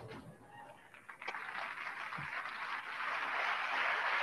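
Audience applauding, starting about a second in and swelling, heard faintly as video playback.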